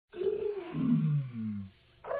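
A deep roar-like sound that slides steadily down in pitch for about a second and a half, then stops.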